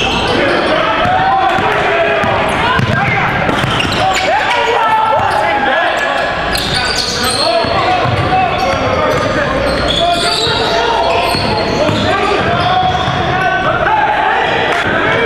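Basketball bouncing on a hardwood gym floor during live play, with players and coaches calling out, in a reverberant gym.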